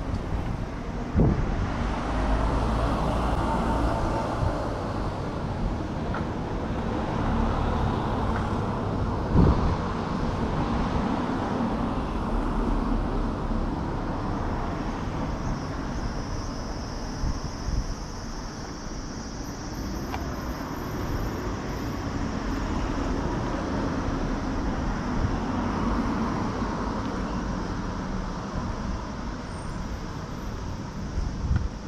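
City street ambience: a steady wash of road traffic noise, with two short sharp knocks, one just after the start and one about nine seconds in, and a faint high steady buzz through the middle.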